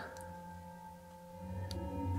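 Faint, sustained drone of a few steady tones, like a singing bowl or ambient background music, with a light click near the end.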